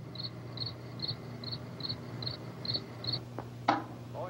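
A cricket chirping at a steady pace, about two and a half short chirps a second, stopping near the end, over a low steady hum. A single click near the end.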